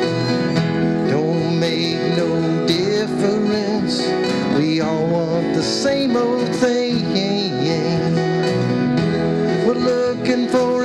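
Acoustic folk-country band playing live: strummed acoustic guitars, upright bass and cajon, with a wavering lead melody line carried on top.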